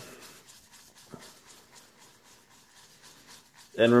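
Badger-hair shaving brush swirling in a ceramic bowl of shaving cream and a little water: quiet, quick, even wet swishing and scraping of bristles against the bowl as the lather is first whipped up.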